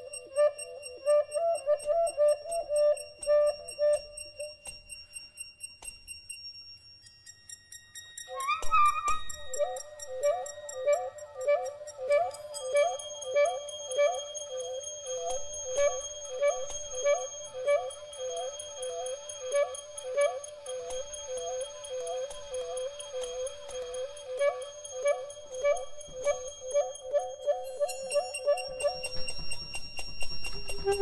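Free-improvised duo music: a soprano saxophone plays a wavering held note, breaks off, and then, from about nine seconds in, circles in a repeating figure with upward flicks about twice a second. Light percussion ticks and thin high whistling tones sound underneath.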